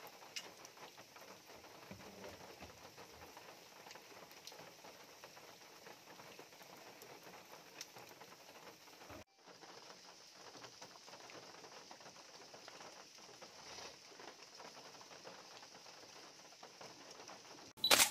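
Rain falling in a steady, faint patter with scattered individual drops. It drops out briefly about halfway, and a short sharp click comes at the very end.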